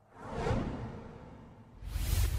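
TV broadcast transition whoosh sound effect: a swish that swells about half a second in and fades away, then a second, deeper whoosh starting near the end.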